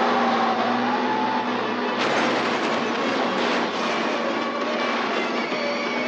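A city bus's tyres screeching and its body grinding against crumpled car metal as it skids and shoves a wrecked car, a dense continuous racket with squealing tones and a fresh burst of crunching about two seconds in.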